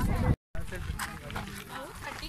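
Low wind rumble on the microphone that cuts off abruptly into a split second of silence, then a group of people talking among themselves in the background.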